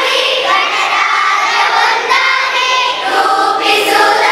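A large group of children singing a song together, in unison and without a break.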